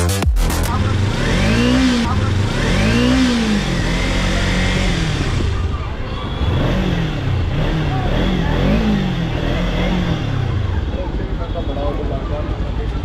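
Motorcycle engine revved in long blips, its pitch rising and then falling with each one. After about six seconds come several quicker revs from a Kawasaki Ninja 300's parallel-twin engine.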